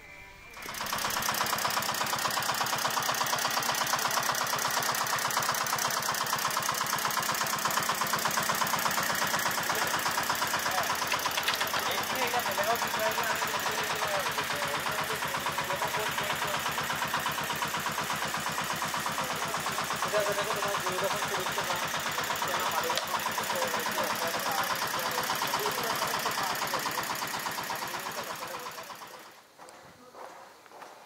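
A steady, fast-pulsing mechanical buzz like a small motor, starting about a second in and fading out just before the end, with a voice faintly heard over it in the middle.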